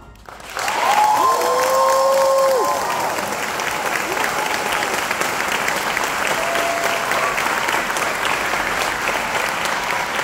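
Audience applauding and cheering at the end of a jazz band number, with one long cheer rising above the clapping about a second in.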